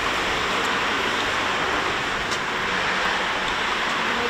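A steady, even rushing hiss at a constant level, with no distinct events in it.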